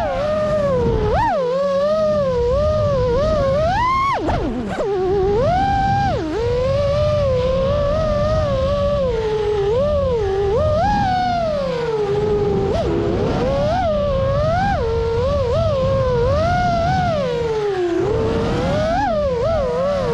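Five-inch FPV freestyle quadcopter's brushless motors whining in flight, the pitch rising and falling continuously as the throttle changes, over a low rushing noise from the air moving past the onboard camera.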